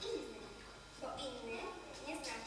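A young performer's voice speaking lines on stage, a brief phrase at the start, then speaking again from about a second in.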